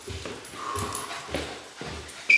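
A dog whining briefly, one short high whine near the middle, over a few soft thuds of footsteps on wooden stairs.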